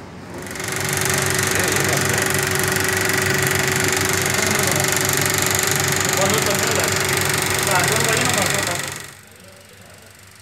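Bauer cinema film projector starting up and running: its motor and intermittent film mechanism make a steady, loud mechanical whir and clatter with a constant hum. The sound cuts off near the end.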